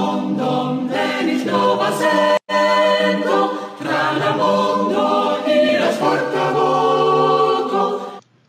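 A choir singing in long held chords, cut off for a split second about two and a half seconds in.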